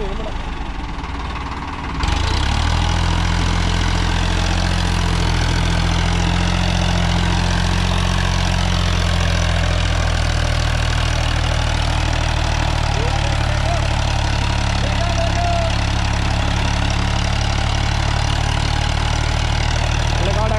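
Sonalika DI-35 tractor's diesel engine labouring under load as it pulls a trolley heaped with sand. It grows suddenly louder about two seconds in, then holds a steady low drone.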